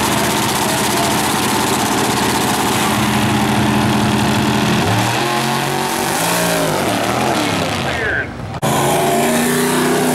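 Drag race car engines running loud at the starting line, holding a steady pitch at first, then rising and falling about five seconds in. About eight seconds in the sound briefly drops out, then comes back loud.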